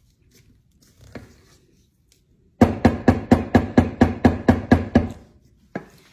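A spatula striking a stainless-steel mixing bowl in a quick run of about fifteen sharp knocks, about six a second, the metal bowl ringing with each hit, starting about two and a half seconds in and lasting a couple of seconds.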